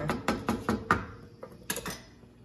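A wooden spoon knocking against a pot of thick tomato meat sauce: a quick run of sharp taps in the first second, then a couple more near the end.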